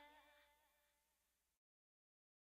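Near silence: the last faint tail of the faded-out background music dies away, then the sound cuts to complete silence about one and a half seconds in.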